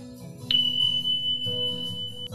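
Casio SA-75 keyboard playing sustained notes on a string voice. About half a second in, a loud, steady, high-pitched electronic beep comes in on top and holds.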